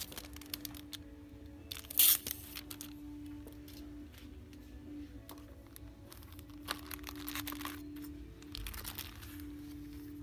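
Background music with long held notes, over the crinkle and rustle of plastic-sleeved sticker and stamp packages being lifted off hooks and handled. The loudest crinkle is a sharp one about two seconds in.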